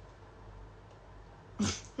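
Quiet room, then near the end one short breathy burst of a stifled laugh.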